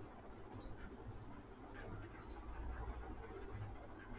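Faint, short, high-pitched chirps repeating about twice a second over a low steady hum.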